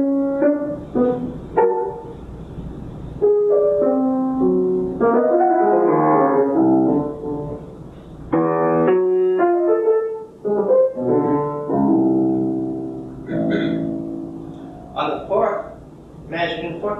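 Grand piano playing a sampling of a long, disjunct and dissonant melodic line, note after note with some notes overlapping. The playing stops about thirteen seconds in, and a voice follows near the end.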